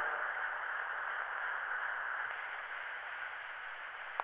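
Cylinder phonograph reproducer running in the blank grooves after the song has ended: a steady surface hiss from the cylinder record, slowly fading.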